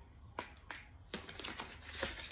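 A paper leaflet and cardboard packaging being handled: a few sharp crisp snaps and light rustling, busier in the second half.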